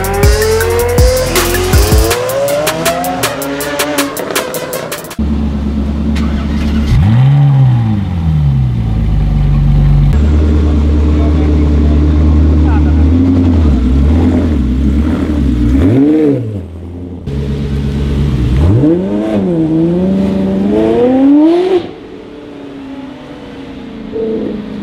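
Electronic intro music with sweeping effects for about the first five seconds. Then a supercar V8, a Ferrari 360 Modena among the cars, runs steadily and is revved in several rising-and-falling blips as the cars pull away. The engine sound drops off abruptly near the end.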